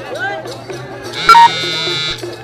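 Live Nepali folk song with a wavering voice over a steady low drone. A little past halfway a loud, harsh buzzing tone cuts in and holds for just under a second.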